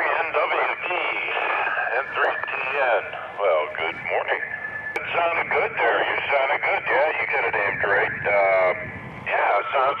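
A voice over a handheld 2-meter FM radio's speaker, thin and cut off at the low and high ends: another station answering a call through a distant repeater.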